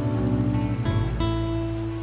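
Background music on acoustic guitar: strummed chords, with a last chord struck a little past halfway and left ringing.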